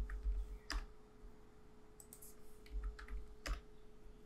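Several faint clicks of a computer mouse and keyboard, with a few low thumps on the desk, while mouse-dragged values are adjusted with Shift held; a faint steady hum runs underneath.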